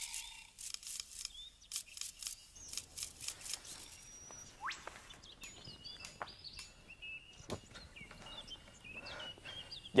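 Quiet outdoor ambience with faint birds chirping, the chirps thickening in the second half. In the first few seconds there is a run of light, quick rustling clicks.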